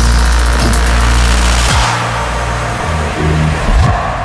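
Dark midtempo electronic music at 110 BPM with a heavy, growling synth bass and deep sub-bass. The bass slides in pitch twice, and the bright upper layer thins out about halfway through.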